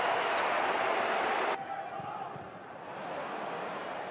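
Football stadium crowd noise, loud for about a second and a half after a goal chance, then cutting off suddenly to a quieter, steady crowd hum.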